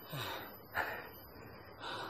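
A man's breathy, laughing gasps: three short puffs of breath about a second apart, with no words.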